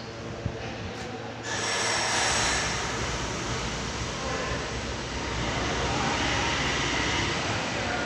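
Steady machinery noise, a hum with a hiss over it, that steps up louder about a second and a half in.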